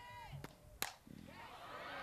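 A single sharp crack of a softball bat meeting a pitch, a little under a second in.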